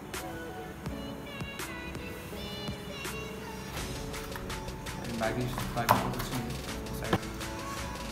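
Background electronic music, a steady melodic track, with a couple of sharp knocks in the last few seconds.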